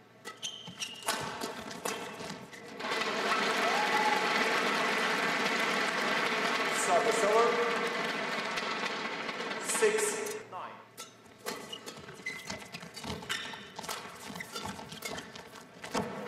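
Badminton rally sounds: sharp racket strikes on the shuttlecock and shoe squeaks on the court. A long stretch of loud crowd noise with shouting voices runs from about three seconds in to about ten seconds in.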